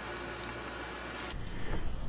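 Quiet room tone between narration: a steady background hiss and low hum with no distinct sound. About a second and a half in, the background abruptly changes character as the recording switches.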